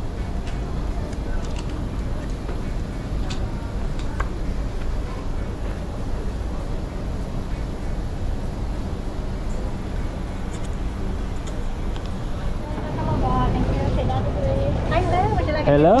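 Steady low rumble and hum in an airport jet bridge during boarding, with a faint high whine throughout and a few light clicks; voices come in near the end.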